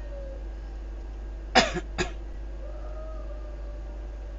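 A person coughing twice in quick succession, about a second and a half in, the first cough the louder, over a steady low electrical hum.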